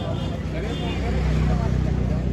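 Busy street-market ambience: indistinct voices of passers-by and stallholders over a steady low rumble that grows a little louder in the second half.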